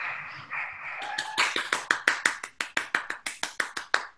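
A person clapping hands in quick, even claps, about six or seven a second, starting about a second in after a brief noisy sound.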